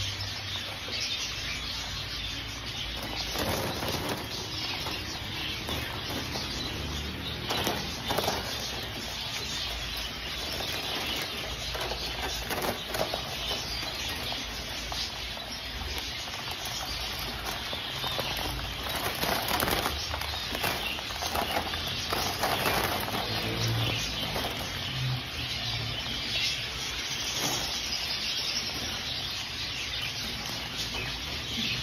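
A large crowd of diamond doves packed in wire cages, flapping and shuffling: a steady rustle of wings with frequent short flurries.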